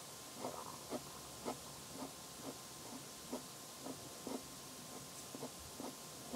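Pen drawing short, quick strokes on a sheet of paper, about two a second, over a steady faint background hiss.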